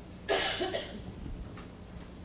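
A man coughs once, a short harsh burst about a third of a second in, followed by quiet room tone.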